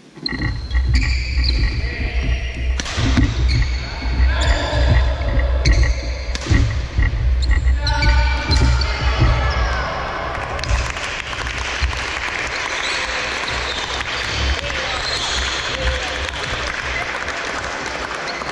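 A fast badminton doubles rally: sharp racket hits on the shuttle, squeaking court shoes and thudding footfalls on a wooden hall floor. From about ten seconds in, when the rally ends, a steady noise of the watching children clapping and cheering takes over.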